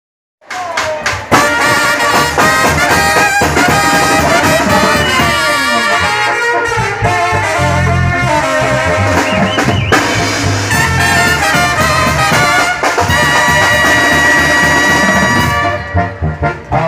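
A live Mexican banda playing an instrumental introduction: trumpets and trombones carry the melody over a tuba and drums. It starts about half a second in.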